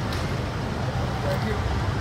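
Street background noise: a steady low rumble of traffic, with faint scattered voices of a crowd.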